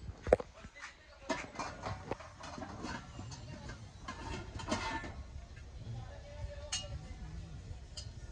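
Brass and steel vessels clinking and knocking against each other as a hammered brass pot is taken off a crowded shelf. The sharpest knock comes about a third of a second in, and a brief metallic ring follows later.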